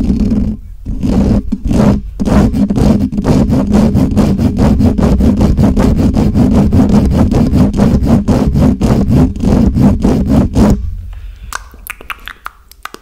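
Fast scratching and rubbing of fingers directly on a microphone, many quick strokes a second with a heavy low rumble. It stops abruptly near the end, leaving a few lighter, sharper taps.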